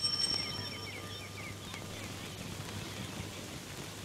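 Quiet outdoor ambience: birds chirping in short, quick repeated calls during the first couple of seconds, over a steady background hiss.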